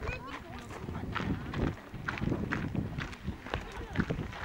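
Indistinct voices of people talking, with a run of clicks and knocks and low rumbling noise close to the microphone.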